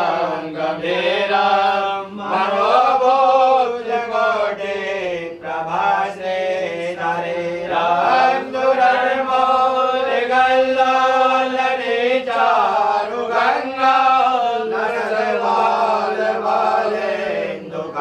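Devotional chanting of a Sanskrit hymn to Shiva, sung in long melodic phrases without a break, over a steady low drone.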